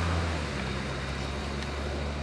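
A low, steady engine hum.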